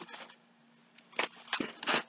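Thin plastic shopping bag rustling in a few brief crinkles as it is picked up and handled, the loudest just after a second in and near the end.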